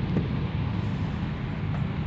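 A steady, low mechanical hum with a light hiss, like an engine or motor running at idle.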